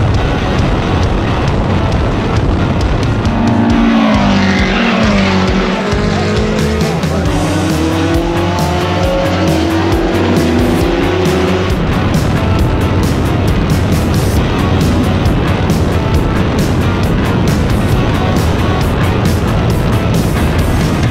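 Race car engines at speed on a circuit, mixed with background music with a steady beat. About four seconds in, an engine note drops and then climbs again through roughly the twelve-second mark as the car revs back up.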